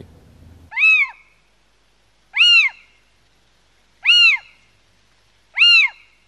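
Little owl calling: four high calls, each rising then falling in pitch, evenly spaced about a second and a half apart.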